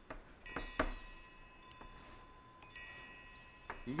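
Chalk on a blackboard: a few sharp taps in the first second, then thin high squeaky tones as a stroke is drawn, and another tap near the end.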